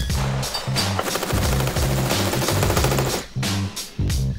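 Rapid automatic gunfire from several rifles on a firing line, a dense run of shots starting about a second in and stopping about two seconds later, over background music with a steady beat.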